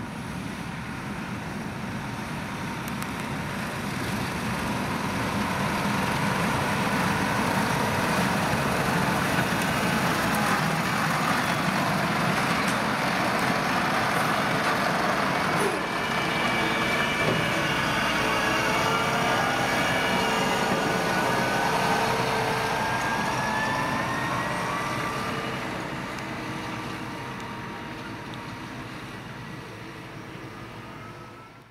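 A Fendt 720 tractor's engine running under steady load while it pulls a Kuhn MergeMaxx 950 belt merger gathering cut grass. The sound swells as the machine comes near, is loudest in the middle and fades toward the end, with a whine that climbs in pitch in the second half.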